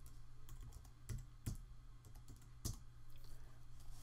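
Faint typing on a computer keyboard: a handful of scattered key clicks, the clearest about a second in, a second and a half in, and just before three seconds.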